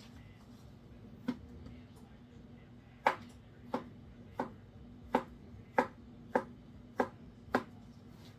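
Kitchen knife chopping cooked, peeled beets on a plastic cutting board. There are about nine sharp chops: one at about a second in, then a steady run of roughly three every two seconds.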